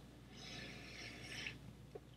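Faint sniffing through the nose into a whisky nosing glass, one soft drawn-out inhale lasting about a second.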